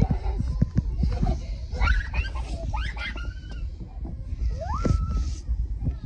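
Footsteps knocking on wooden playground deck boards, then a few high squeals from a young child that rise in pitch, around two, three and five seconds in.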